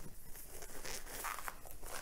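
Blue nitrile glove being pulled onto a hand: a soft, irregular rubbery rustling and crinkling.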